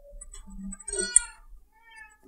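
Faint voice heard from off the microphone, with a short high rising sound about a second in.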